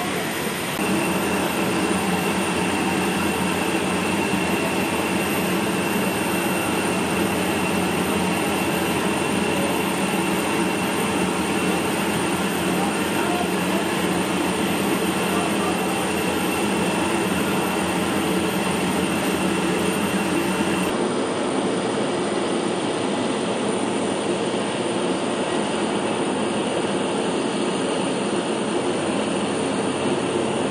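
Steady loud drone of heavy airfield machinery, with a thin high whine over it. The sound changes abruptly about 21 seconds in, where the whine stops.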